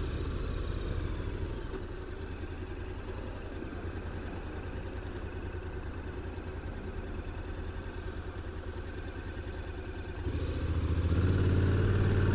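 Honda NC750X motorcycle's parallel-twin engine running at low revs with an even pulse while the bike rolls slowly, then getting louder about ten seconds in as it pulls away.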